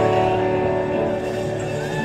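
Electric guitars and bass holding a sustained chord through their amps, with no drums, the sound ringing on and slowly fading.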